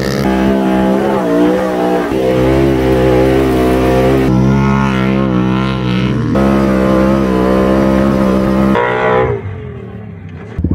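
Off-road engines, a Can-Am Maverick 1000 side-by-side and a dirt bike, running hard at high revs. The pitch jumps abruptly a few times, and the sound falls away near the end.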